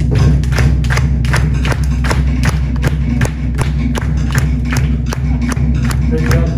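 Tahitian drum ensemble playing a fast, steady beat: sharp strikes on hollowed wooden log drums, about three a second, over deep skin drums.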